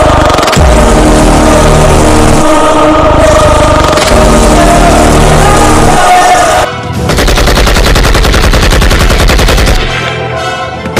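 Dramatic film-score music with long held tones, cut off about two-thirds of the way in by a long burst of rapid machine-gun fire.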